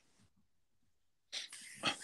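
Near silence, then a short, sharp intake of breath close to the microphone about a second and a half in, just before speech.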